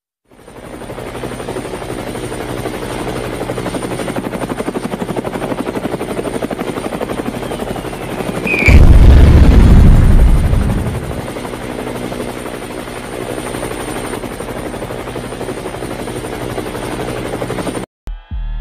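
Helicopter rotor sound effect, a steady rapid chop. About nine seconds in, a brief falling whistle leads into a loud explosion that booms and dies away over about two seconds, while the rotor chop carries on.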